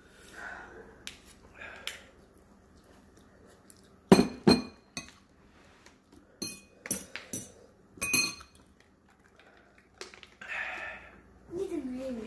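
Tableware clinking: a handful of sharp clinks and knocks, some with a brief glassy ring, between about four and eight seconds in, the first the loudest.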